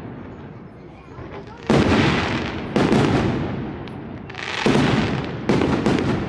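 Aerial firework shells bursting overhead: four sharp bangs, roughly a second apart, each trailing off in a fading echo.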